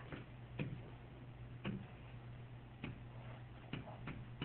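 Stylus tapping on a tablet computer's screen: five sharp clicks at uneven spacing, about one a second, over a steady low hum.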